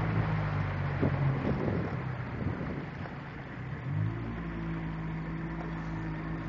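Small fishing boat's engine running steadily under way, over wind and water noise. About four seconds in, its pitch dips briefly and then settles at a slightly higher, steady note.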